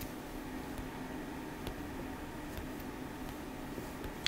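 Quiet, steady room tone: a low hiss with a faint hum and a few very faint ticks.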